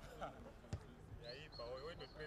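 Faint sounds of a football training session: a single ball thump less than a second in, then distant players' voices calling from a little after one second, with a thin steady high tone under them.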